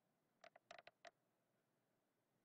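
Dry-erase marker writing on a plastic-covered sheet: a handful of faint, short squeaks and scratches of the felt tip, from about half a second to one second in.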